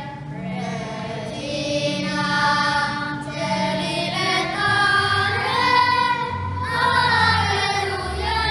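A hymn sung by a choir of voices that include children, over a low, steady instrumental accompaniment whose bass deepens about five seconds in.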